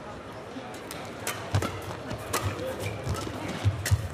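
Badminton rally: a racket strikes the shuttlecock in a run of sharp cracks, about every half second, with thudding footsteps on the court under several of them, over steady arena background noise.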